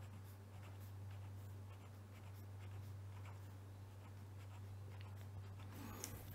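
Pen writing on paper: faint, short scratching strokes as digits are written one after another, over a steady low hum.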